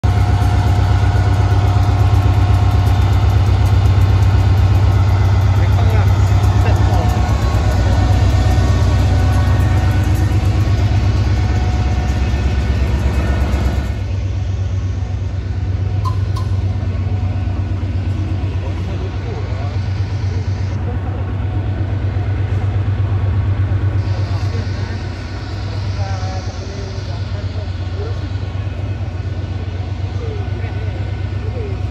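A diesel locomotive engine idling with a steady deep hum, with people's voices in the background. The sound changes abruptly about halfway through.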